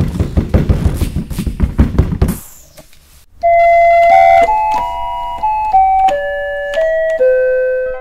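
Crashes and impacts, a sound effect for a meteorite attack, come fast and dense for about two and a half seconds, then cut off. After a moment's near silence a piano begins a slow melody of single held notes.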